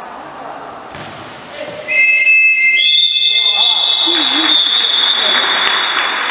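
Referee's whistles giving long final blasts to end a futsal match: a steady shrill whistle starts about two seconds in, a second, higher one joins a second later and holds to the end, over chatter and noise in the sports hall.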